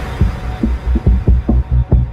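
Electronic dance music at a stripped-down break: a lone bass kick drum beating about five times a second with little else, the start of a build-up.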